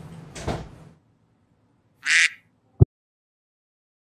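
Background music ending with a hit about half a second in, then after a silence a single short quack about two seconds in, followed by a brief sharp knock.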